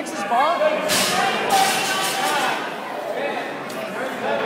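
Indistinct voices of spectators calling out in a large, echoing gym hall, with a short sharp noise about a second in.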